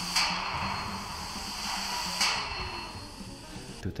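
Steam hammer working: two blows about two seconds apart, each a sharp strike followed by a hiss of steam.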